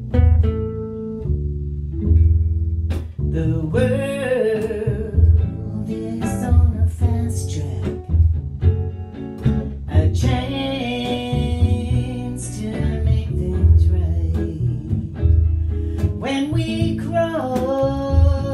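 Archtop guitar and plucked upright double bass playing a slow blues together, the bass walking low under the guitar's sliding, wavering notes.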